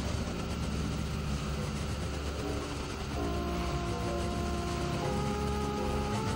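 Experimental electronic drone music: a dense, noisy rumble. Steady held synthesizer tones at several pitches come in about three seconds in and change pitch about two seconds later.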